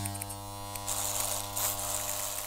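Electric hair clipper buzzing steadily with a low, even drone, a brighter hiss joining about a second in.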